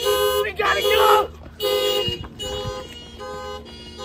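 Car alarm sounding a two-tone car horn in repeated honks, about six blasts roughly half a second apart, fainter after the first two. A voice shouts over the first second.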